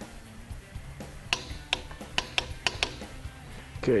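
Ratchet wrench clicking as it is worked on the harmonic balancer at the crank snout of a small-block Chevy: a run of about eight sharp clicks, starting about a second in.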